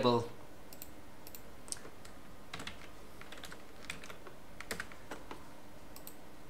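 Scattered, irregular clicks of a computer keyboard and mouse, a few short clicks spread out at uneven gaps, over a steady faint hiss.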